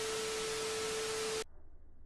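TV-static transition sound effect: an even hiss with a steady beep tone through it, lasting about a second and a half and cut off abruptly, leaving only a faint low hum.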